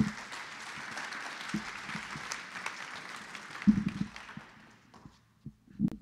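Audience applauding, dying away after about four and a half seconds. There are a couple of low knocks, one in the middle and one near the end.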